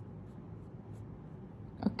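Pen strokes on workbook paper, faint scratching as a line is drawn down one column of a grid to cross it out.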